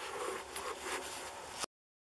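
Faint, even rustling and shuffling, which then cuts off suddenly to complete silence near the end.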